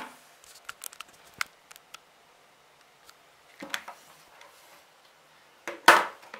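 Hands handling small gadgets and cables on a wooden bench: a few small clicks and ticks in the first two seconds, a soft rustle a little past halfway, and a sharp, louder clatter near the end.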